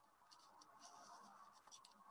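Near silence: faint room tone with a few soft, brief scratchy rustles.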